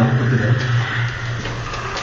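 A steady low mechanical hum with an even hiss over it, the unexplained sounds in the dark enclosed space.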